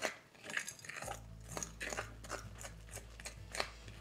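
A utensil scraping and knocking against a glass mixing bowl while a sticky flour, egg and milk dough is stirred by hand, in a run of short, irregular scrapes.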